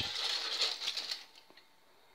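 Aluminium foil crinkling as it is peeled off the top of a pudding mould, dying away after about a second.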